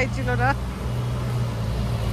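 Street traffic: a vehicle engine running nearby, a steady low hum with road noise.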